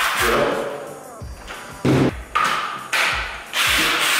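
Several sharp clacks and knocks of hard plastic power-tool parts being handled, with background music. The parts are the Black & Decker Matrix drill base and its snap-on interchangeable heads.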